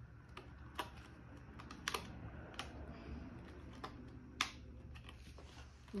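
Fingers picking at a small plastic container while trying to open it: a few sharp plastic clicks and taps at irregular intervals.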